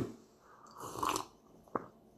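A soft sip of stout from a glass: a short slurp about half a second in, then a brief click near the end.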